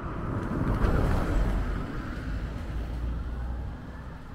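A small kei van driving past close by. Its engine and tyre noise swell to a peak about a second in, then fade as it moves away.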